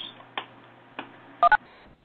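Two quick telephone keypad beeps about a second and a half in, each a pair of notes sounding together, on a conference-call line. Two faint clicks come before them.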